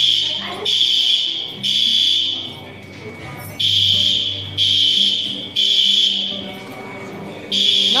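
Building fire alarm sounding: a loud, high beep in groups of three with a short pause between groups, the standard temporal-three evacuation signal.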